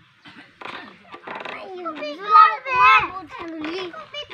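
Children's high-pitched voices talking and calling out while they play, loudest about two and a half to three seconds in.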